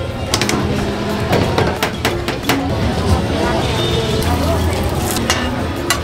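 Busy street-stall ambience: steady traffic rumble and background voices, with a run of sharp clicks and knocks of utensils on a steel counter and griddle in the first couple of seconds and again near the end.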